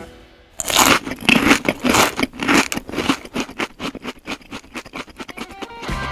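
Crunching chews as the toy nibbler head eats a plastic fruit: a string of crisp crunches, about two a second at first, then quicker and softer toward the end.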